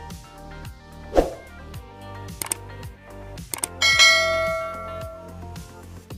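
Background music, with a couple of sharp clicks and then a loud bell-like ding about four seconds in that rings and fades: the subscribe-button notification sound effect.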